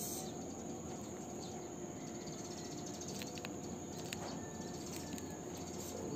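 Steady background hiss with a few faint clicks as the metal flap clasp of a leather sling bag is worked open by hand.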